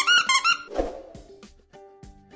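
Squeaky fabric toy squeezed rapidly, giving a quick run of high squeaks in the first half-second or so. Then soft background music with a few held notes.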